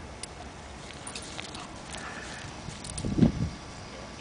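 A single short, dull low thump about three seconds in, over scattered faint light clicks.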